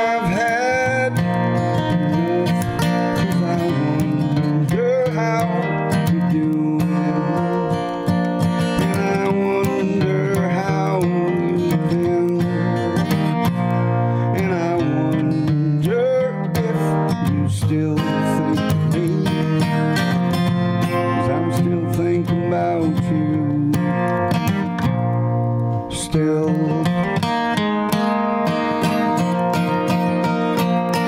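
A man singing while strumming a sunburst Guild acoustic guitar.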